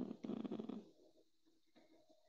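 A person's low, rough, buzzing hum, like a thinking "hmm" in a creaky voice, lasting about a second before it fades to near silence.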